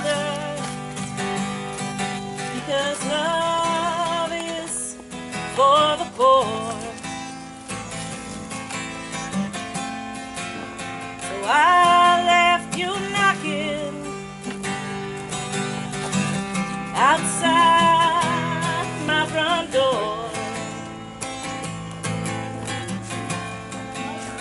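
An acoustic guitar being strummed, with a woman singing over it in phrases.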